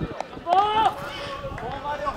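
Voices calling out across an open football pitch during play, with one loud raised call about half a second in.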